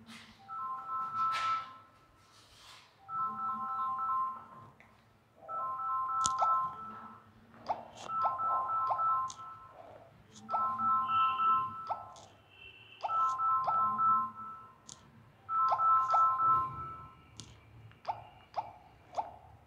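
A short electronic tune of two or three steady notes, repeated the same way about every two and a half seconds, like a phone ringtone.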